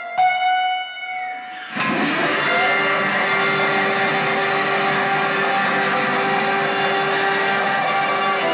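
Electric guitar playing a rising run of single notes, the last one ringing out, then about two seconds in a blues harmonica comes in with loud sustained chords over the guitar.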